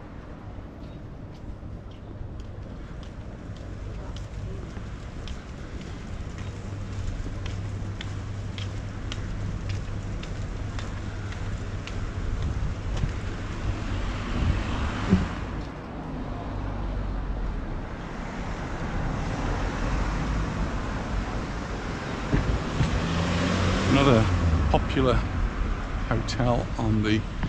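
Street traffic beside the pavement: cars passing over a steady low hum, growing louder in the second half and loudest near the end as a vehicle goes by.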